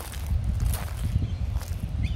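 Wind buffeting the microphone, a heavy, uneven low rumble, with a few soft footsteps on grass.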